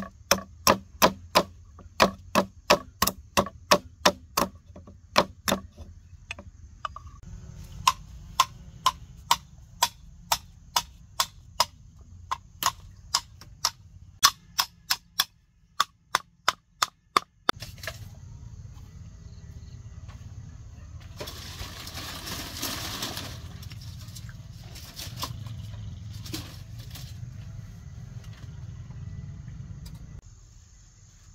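A large knife chopping bamboo in quick repeated strikes, about three a second, each a sharp hollow knock with a ringing pitch. The chopping stops about two-thirds of the way in, leaving a steady high insect tone and a brief rustling noise about three-quarters in.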